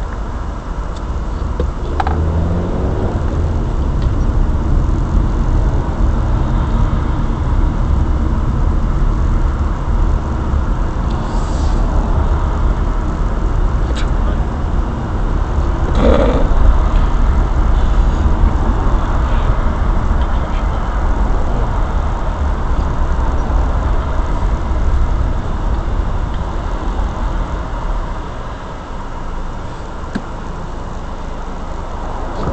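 Steady low rumble of a car's road and engine noise heard from inside the cabin through a dash cam microphone, with a brief louder sound about sixteen seconds in.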